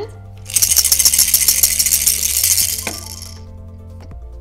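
Small plastic balls rattling inside hollow plastic spaceship game pieces as the pieces are shaken. It is a dense, rapid clatter lasting about three seconds, which settles which coloured balls show in the ship's base.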